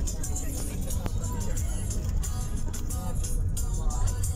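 Music with a regular beat and a singing voice, over the steady low rumble of a moving road vehicle heard from inside.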